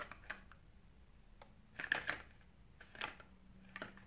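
A handful of faint, short clicks and rustles of a small black mascara box being turned over and handled in the fingers.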